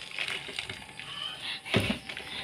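Hand dishwashing at a stainless steel sink: a soapy sponge being worked, with small clinks and a louder knock near the end.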